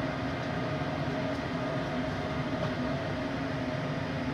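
Steady mechanical hum of running fans: a low drone with a faint steady whine over it.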